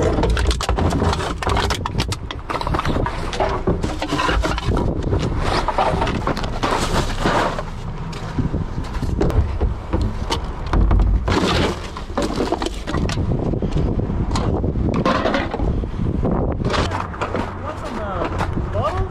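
Aluminum cans, plastic bottles and cartons clattering and rattling against each other and the plastic walls of a recycling bin as a gloved hand rummages through them, with wind buffeting the microphone.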